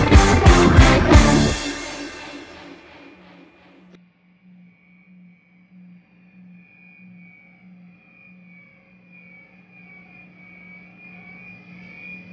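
A rock band jam with loud distorted electric guitar, its last hits about a second and a half in, then ringing out and fading over a couple of seconds. A faint, steady sustained tone from the guitar amp lingers after it.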